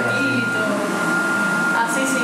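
Wall-mounted electric hand dryer running with hands held under it: a steady rush of air with a constant high whine and a low hum.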